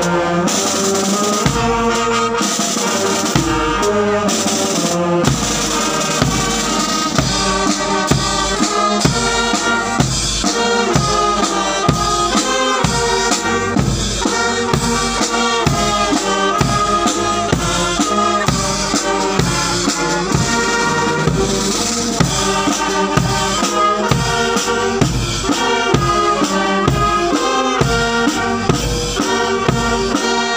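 Marching band playing: brass instruments carry a tune over snare drums and a bass drum, which settles into a steady beat a few seconds in.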